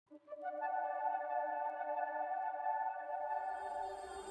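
Channel intro sting: a held synthesizer chord whose notes come in one after another within the first half-second, then sustain and slowly fade.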